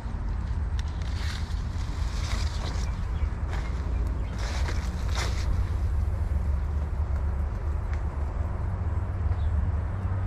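A steady low rumble of outdoor noise, with a few short rustles in the first five seconds or so as apple leaves and branches are brushed close to the microphone.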